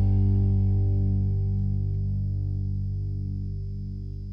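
Final chord of a rock song held on distorted electric guitar, ringing out and slowly fading.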